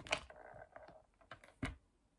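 Plastic fashion doll being pressed down and handled on a hard plastic case: a few light plastic clicks and taps over a soft rustle, the sharpest about a second and a half in.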